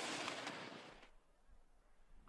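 Ski edges scraping across hard-packed slalom snow in a turn, a hissing scrape that fades away after about a second.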